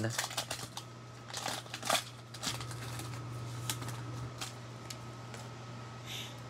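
A Panini Prizm basketball card pack being torn open and its cards handled: a scatter of small crinkles and clicks.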